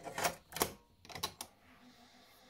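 A cassette being loaded into the cassette door of a 1970s Murphy BA200 portable cassette recorder and the door snapped shut: four sharp plastic clicks and clacks over about a second and a half.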